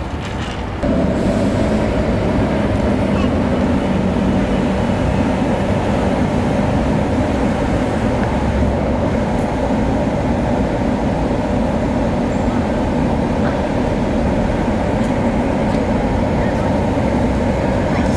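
Electric blower fan of a giant inflatable Minion figure running, a steady loud drone with no change in pitch. It starts abruptly about a second in.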